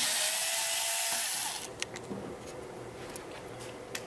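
Cordless electric screwdriver running for about a second and a half as it backs out the screw holding the controller card's bracket to the chassis, then a few light clicks as the parts are handled.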